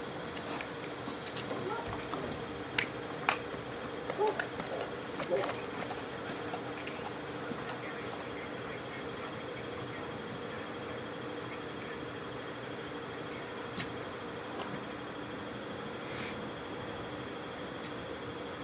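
A steady electrical hum with a faint, high-pitched continuous tone. Over it come a few sharp clicks and knocks, mostly in the first six seconds, and faint murmured voices a few seconds in.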